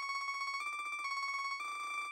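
Sped-up MuseScore piano playback of notes as they are entered: a fast, even stream of repeated high notes, the pitch shifting by small steps a few times.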